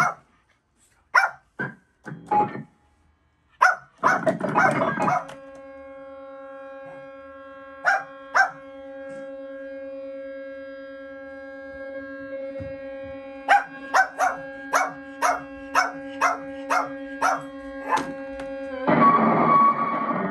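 Circuit-bent Casio SK-1 sampling keyboard played as an improvisation. It opens with short, sharp, separated sounds, then holds a steady pitched tone from about five seconds in. Later, repeated stabs come about twice a second over the held tone, and a loud, dense burst of sound breaks in near the end.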